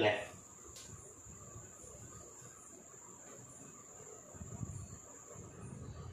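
A cricket trilling steadily in a high, thin tone. There is a faint click about a second in and soft low thuds near the end.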